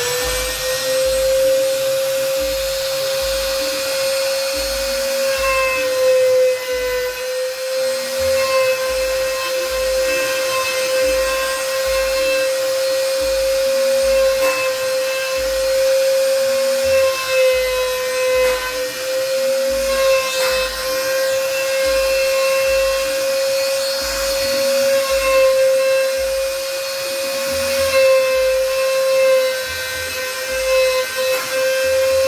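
Trim router used as a CNC router spindle, running at full speed with a steady high whine while the machine engraves digits into a wooden board. Extra rasping cutting noise comes and goes as the bit moves through the wood.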